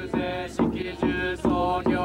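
Buddhist priests chanting in unison in an even rhythm of about two beats a second, with a sharp knock at the start of each beat.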